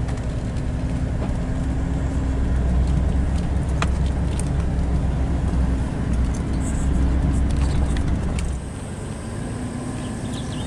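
Vehicle driving slowly on a dirt track, heard from inside the cab: a steady low engine and tyre rumble with a couple of brief clicks about four seconds in. The rumble drops off sharply about eight and a half seconds in.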